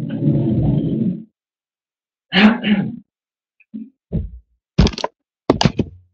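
Bumps, rustles and knocks from a person moving about a small room and setting down a stool in front of a webcam: a second of rustling at the start, a louder scrape in the middle, then several sharp knocks in the second half, each cut off abruptly to silence.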